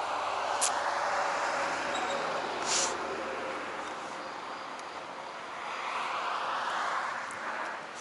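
Cars passing on a road, their tyre and engine noise swelling and fading twice, with a brief hiss about three seconds in.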